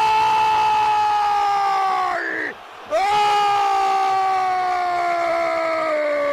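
A radio football commentator's goal cry: a long shouted "gol" held on one slowly falling note, a short breath about two and a half seconds in, then held again.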